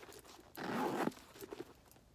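Zipper of a YSL Lou Mini Camera Bag being pulled shut, one short scratchy pull about half a second in, lasting about half a second.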